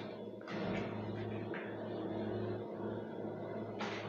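Steady low electrical hum, with a few brief rustles and knocks of handling close to a clip-on microphone.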